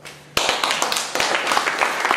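The last piano notes fade out, then audience applause starts suddenly about a third of a second in: many hands clapping densely.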